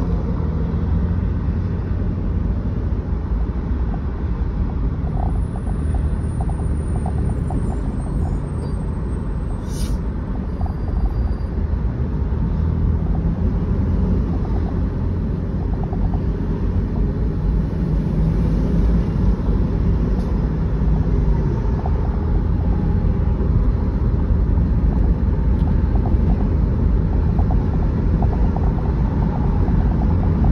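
Steady low rumble of a car's road and engine noise heard inside the cabin while driving in traffic, growing a little louder in the second half.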